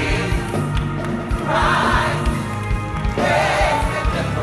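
Gospel choir singing over keyboard and band accompaniment with a steady low drum beat, the voices swelling twice.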